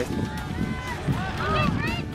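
A voice calling out, its pitch bending up and down and rising near the end.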